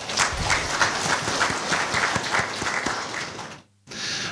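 Audience applauding: dense clapping from many hands for about three and a half seconds, cutting off suddenly near the end.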